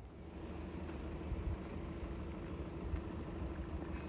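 A Volkswagen Golf's engine running at low speed as the car pulls up close, a steady low hum that grows louder over the first second, then holds.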